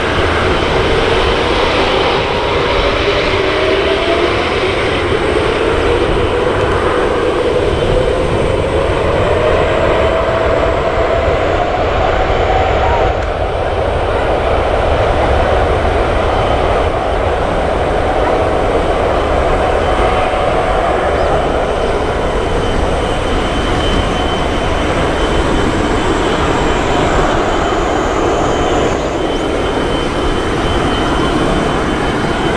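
Airbus A350-900 jet engines (Rolls-Royce Trent XWB turbofans) spooling up for takeoff. A whine rises in pitch over the first dozen seconds, then holds as a loud, steady jet noise while the airliner rolls down the runway.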